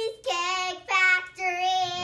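A young girl singing three high, held notes.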